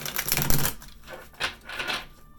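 A deck of tarot cards being riffle-shuffled by hand: a fast flutter of cards, in two riffles, the second starting about a second and a half in.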